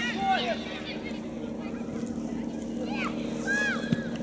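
Shouts and calls from players and onlookers at a youth football match, over a steady low mechanical hum. There is a single sharp knock just before the end.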